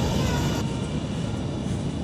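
Steady low rumble of supermarket background noise, with a voice trailing off at the start.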